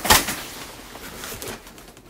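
Hands rummaging in a cardboard box packed with bubble-wrapped items. A sudden loud rustle or knock comes just after the start, then softer rustling with another small knock about a second and a half in.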